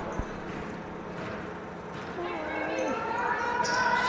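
A basketball being dribbled on a hardwood gym court, under a low hum of gym noise, with a faint voice calling out on the court partway through.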